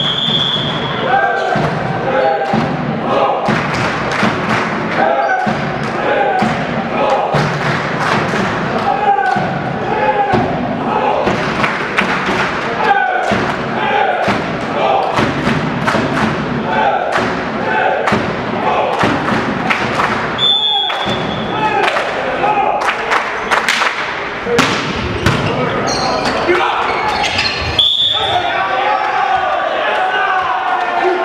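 Volleyball in a sports hall: players and spectators calling and chattering throughout, with repeated ball thuds and slaps, and a referee's whistle blown briefly three times: at the start, about two-thirds of the way in and near the end.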